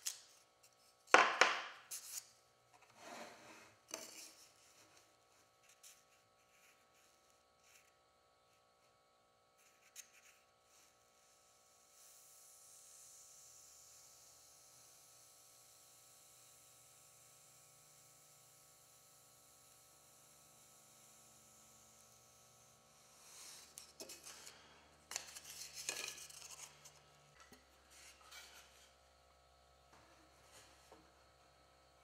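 Workbench handling noises: a styrofoam block and an aluminium bar pattern knocked, rubbed and slid on the plastic base of a hot-wire foam cutter, a few sharp clatters near the start and again near the end. In between, a long stretch of faint steady hiss while the foam is pushed past the hot wire.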